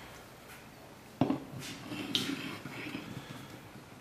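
Bowflex SelectTech 552 dumbbell parts being handled as a disc assembly is lined up on its shaft keyway: a sharp knock about a second in, then a couple of seconds of faint scraping and light clicks.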